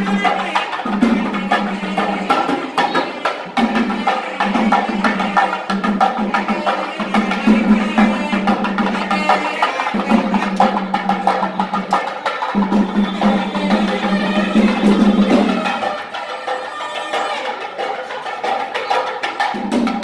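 Live traditional festival music: rapid drumming with a melody over it and a held low note that breaks off every few seconds and drops out for a while near the end.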